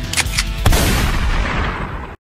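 Gunshot sound effects: three sharp shots in quick succession, the last trailing off in a long, fading noisy tail that cuts off abruptly.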